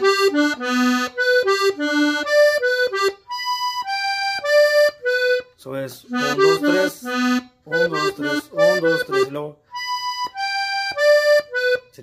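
Three-row diatonic button accordion in G playing short ornamental runs in separate phrases with brief pauses between them. A four-note descending figure is played in the middle and again near the end.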